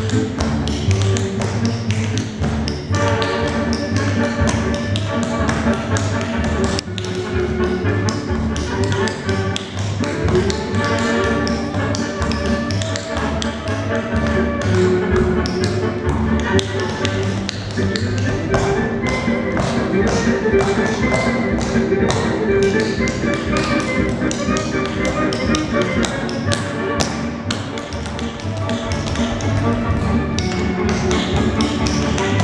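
Shoes tapping out dance steps on a wooden floor, many sharp taps, over recorded music with a steady beat.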